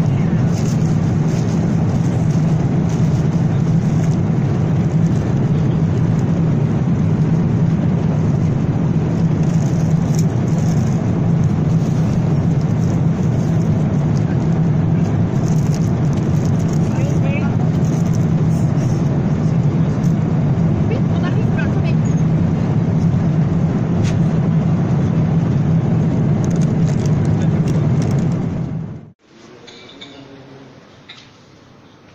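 Steady, loud cabin noise of a jet airliner in flight, an even rushing roar of engines and airflow with its weight low down. It cuts off suddenly about a second before the end.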